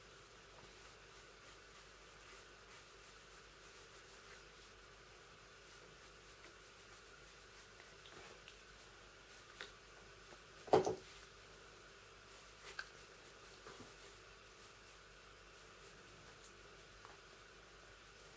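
Faint, scattered pencil strokes on paper over quiet room hum, with one brief louder sound about eleven seconds in.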